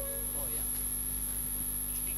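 Steady electrical mains hum with a faint high whine, with faint distant voices under it.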